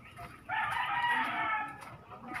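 A rooster crowing once: a single long call of over a second, starting about half a second in.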